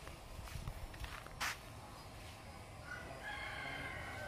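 A rooster crowing faintly in the distance, one drawn-out call near the end, over quiet outdoor background noise. A single sharp click sounds about one and a half seconds in.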